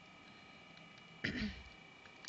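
Quiet room tone, broken a little over a second in by one short throat-clear from a woman.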